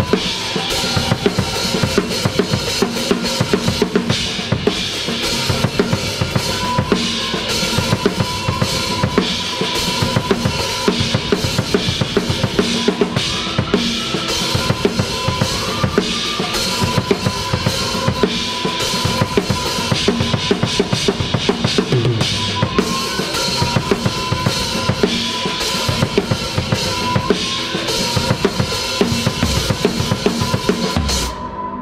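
Acoustic drum kit played up close in a steady, driving beat: bass drum, snare and cymbals. The band's other instruments sound beneath the drums.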